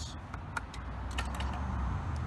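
A few light, irregular clicks from the motorcycle's handlebar switch gear being worked by hand, over a low rumble of handling noise.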